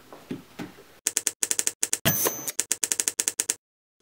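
Typewriter sound effect: a fast run of key strikes, about six a second, with a short ring about two seconds in, cutting off abruptly half a second before the end.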